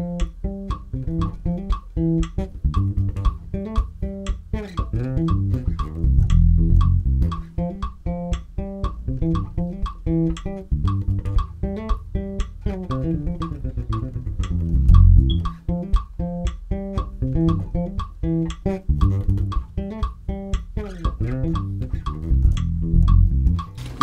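Electric bass guitar playing a busy, repeating Congolese-style bassline made of two alternating patterns, with a metronome's steady clicks keeping time.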